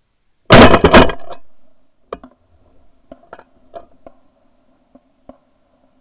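Two very loud shotgun blasts about half a second apart, starting half a second in, recorded from a camera on the gun's barrel. They are followed by several faint, short sharp reports or clicks spread over the next few seconds.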